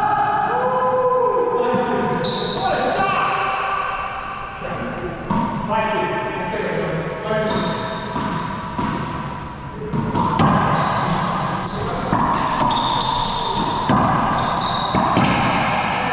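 Racquetball bouncing and smacking off the walls and hardwood floor of an enclosed court, ringing in the hall, with the sharpest hits in the second half. Sneakers squeak on the wood floor and players' voices come between the hits.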